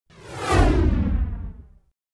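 Logo intro sound effect: a whoosh with a deep bass boom that swells quickly, sweeps down in pitch and fades away within two seconds.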